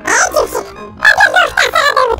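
A sped-up, high-pitched "chipmunk" singing voice in a song. It breaks off briefly about half a second in and starts again about a second in.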